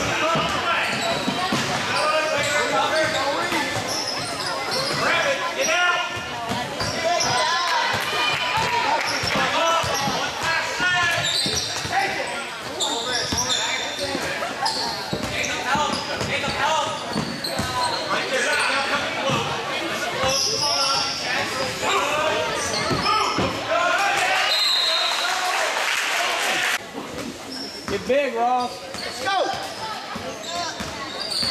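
Basketball game in an echoing gym: a ball being dribbled on the hardwood court, with voices of players and spectators calling out throughout.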